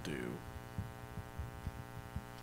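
A spoken word ends, then a steady electrical mains hum runs in the audio, with a few faint, short low thumps scattered through it.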